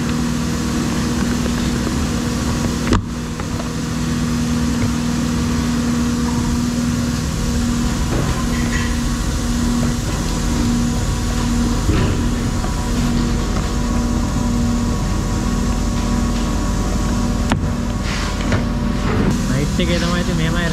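Steady drone of machinery in a plastic bucket factory: a constant low hum with a held tone, and a single sharp click about three seconds in.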